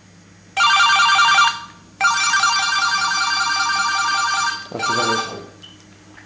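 Cordless phone handset ringing with an incoming call: a short electronic multi-tone trilling ring about half a second in, then a longer ring of about two and a half seconds.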